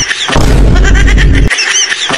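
Laughter close to the microphone: a breathy rush of noise with a heavy low rumble lasting about a second, then short high-pitched squeals.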